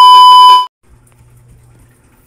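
Loud, steady, high test-tone beep of the kind that goes with TV colour bars, with some glitchy crackle. It is used as a transition sound effect and cuts off suddenly well under a second in. After it comes only a faint low hum.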